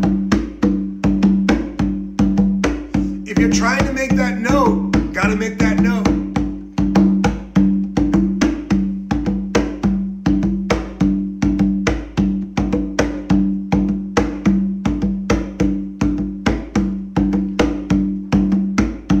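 Conga drum played with bare hands in a steady capoeira rhythm, about four strokes a second, each stroke leaving the skin ringing with a low tone.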